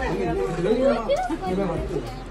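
Several people talking at once, their voices overlapping in lively chatter.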